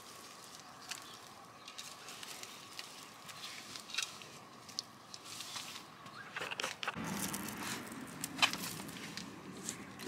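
Faint rustling and scattered small clicks of soil and plant cuttings being handled and dropped onto a garden bed by hand, with a change in the background noise about seven seconds in.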